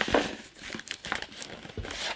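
Printed cardboard box insert being handled and shifted: irregular crinkling, scraping and light knocks of cardboard, loudest just after the start.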